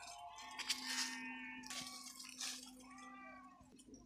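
About three high, pitched bleats from a grazing flock of sheep and goats, each call bending up and down in pitch.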